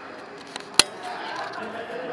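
A single sharp click a little under a second in, over faint, indistinct voices.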